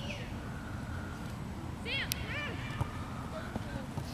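Distant voices calling out across a youth soccer field, with two short high-pitched calls about two seconds in and a sharp click just after, over a steady low rumble.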